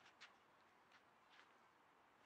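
Near silence, with a few faint, irregular ticks.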